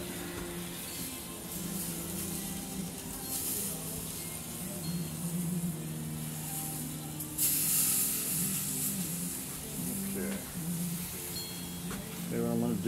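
Pork tenderloin sizzling on a gas grill grate while it is turned with tongs, a steady hiss that swells louder for a second or two about seven seconds in.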